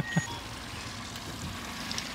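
Boat motor running steadily at trolling speed, about three miles an hour, with water washing along the hull.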